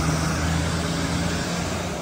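Electric air blower running steadily to keep an inflatable water slide inflated: a continuous drone with a low hum.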